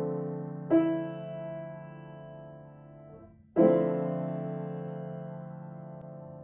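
Piano playing a D minor seventh chord with added ninth (Dm7 add9). The chord rings with a second attack under a second in and fades, is released about three seconds in, then is struck again fuller and left to ring, slowly fading.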